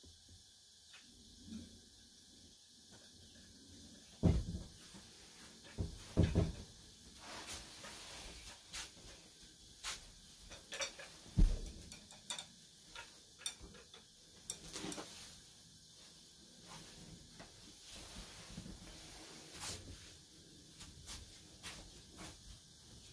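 Scattered soft knocks, clicks and thumps of a person moving about on tatami mats and handling things nearby, the loudest thump about eleven and a half seconds in.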